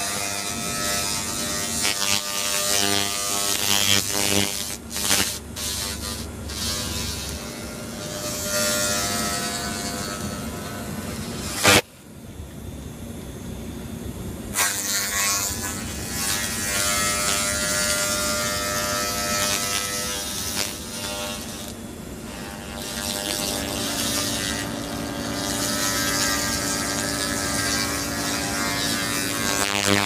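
Handheld laser rust-cleaning gun working over a rusted steel grate: a steady buzz with a hiss and crackle as the rust is burned off. It stops with a sharp click about twelve seconds in and starts again a couple of seconds later.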